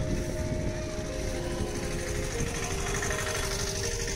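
Outdoor street noise: a steady low rumble of road traffic and wind on the microphone, with a few held tones over it that shift about halfway through.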